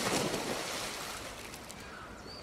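A splash as two people jump into a swimming pool, followed by churning water that fades over about two seconds.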